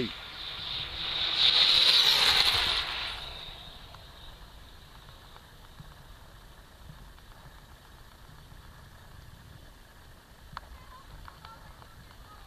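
A 6S electric speed-run RC car going past at high speed: a high whine and rush that swells from about half a second in, peaks around two seconds and fades away by four seconds as the car runs off down the road.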